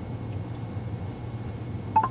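Steady low hum inside a car's cabin, then a short high beep near the end: the phone's voice-command prompt tone, signalling that it is ready to listen.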